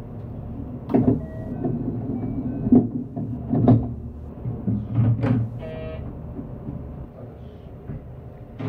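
JR West commuter train heard from just behind the driver's cab: a low rumble with a string of sharp knocks and thumps, and a short buzzing tone a little before six seconds in.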